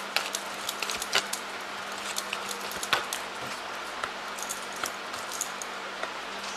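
Tarot cards being shuffled and drawn from a deck by hand: a scatter of light, irregular clicks and snaps over a steady faint hiss and hum.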